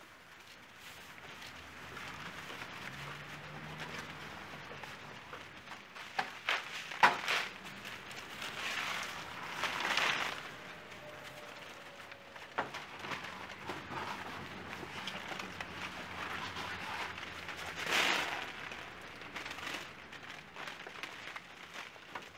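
Wet splashing and slopping of liquid paint and mud being poured and smeared, coming and going, with a few sharp knocks about six to seven seconds in and louder splashes near the middle and again towards the end.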